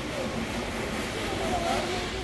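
Indistinct voices over a steady low background noise.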